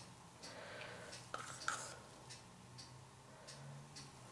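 Faint, scattered light clicks and taps of a wooden craft stick working wet acrylic paint on a canvas, with a faint low hum underneath.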